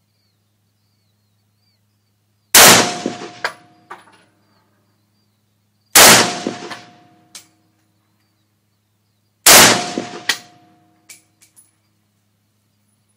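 Century Arms GP WASR-10 AK-pattern rifle in 7.62x39mm fired three times, slow aimed single shots about three and a half seconds apart. Each report dies away over about a second with echoes, a short metallic ring and a couple of sharp clicks.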